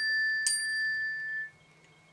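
A small bell-like metallic ring, struck twice about half a second apart, ringing out clearly and fading by about a second and a half in.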